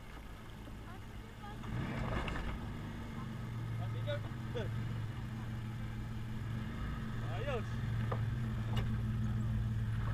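Nissan Pathfinder R50's V6 engine running at low revs as the SUV crawls down off a dirt mound. Its steady hum grows louder about two seconds in and again near the end as the truck comes close past the camera.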